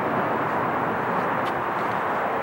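Steady, even hum of distant freeway traffic.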